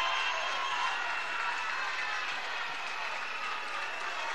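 A large crowd applauding and cheering steadily, with scattered shouting voices.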